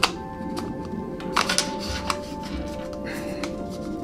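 Background music with a few sharp clicks and handling sounds as a lens hood is twisted and locked onto a Sigma 24-70mm f/2.8 DG DN Art lens, with the clearest clicks about one and a half seconds in.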